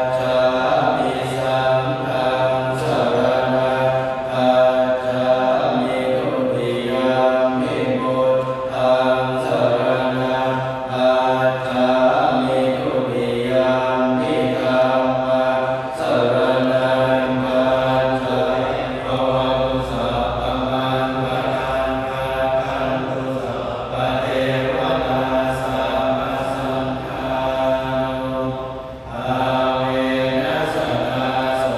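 Nine Thai Buddhist monks chanting Pali scripture in unison, amplified through microphones and a PA loudspeaker. The chant is a steady, near-monotone recitation on a few pitches, with a brief break near the end.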